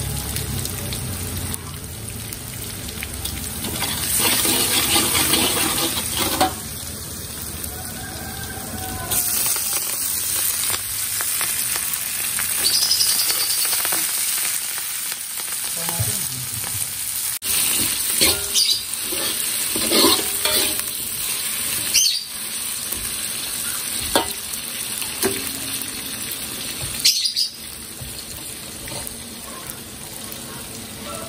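Crushed garlic and shallots sizzling in hot oil in a wok, stirred with a metal spatula. The spatula scrapes and knocks sharply against the pan several times, and the sizzle surges louder a few times as leafy greens and then tomatoes go into the oil.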